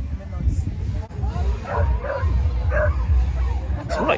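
Wind buffeting the camera microphone outdoors, a steady gusty rumble, with short voice-like sounds from people nearby about halfway through.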